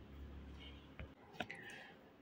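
Near quiet, with two faint clicks about a second in and a brief faint high-pitched sound just after them.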